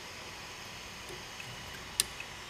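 Faint handling of wires with a steady low hiss, ending in one sharp click as a wire connector is pushed home on the printer's hot-end splitter board.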